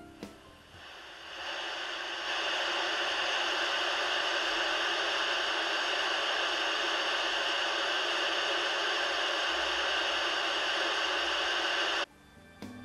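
President Harry III CB radio's receiver hissing from its loudspeaker in AM mode with the antenna disconnected: the receiver's own noise. The hiss swells in over the first two seconds as the volume knob is turned up, holds steady, then cuts off at the end.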